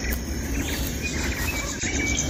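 Outdoor background noise with a low rumble and a few faint high chirps.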